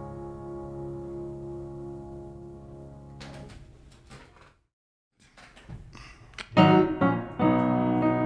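Keyboard music: a held chord fades away to a brief moment of silence about halfway through, then a new, louder keyboard part starts a little before the end, at the start of the next song.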